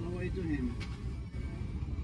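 A brief voice call near the start, sliding down in pitch, over a steady low rumble, with background music.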